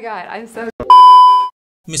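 A single loud, steady electronic beep about half a second long, starting about a second in and then cut off abruptly.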